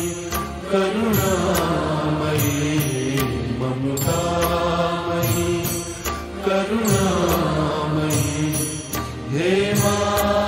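Hindi devotional song (a bhajan to the divine mother): a male voice singing long, slow, held lines over instrumental accompaniment.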